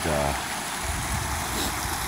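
Steady rush of creek water spilling over a low stone ledge in a small waterfall.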